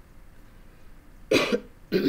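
A woman's single short, harsh cough about a second and a half in, followed right at the end by a voiced throat-clearing; she has a cold.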